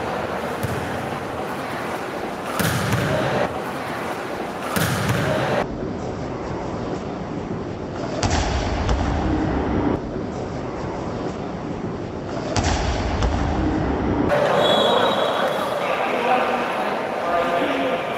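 Crowd voices and shouts echoing in an indoor sports hall during a volleyball rally, with two sharp thuds about four seconds apart. The crowd noise swells louder over the last few seconds.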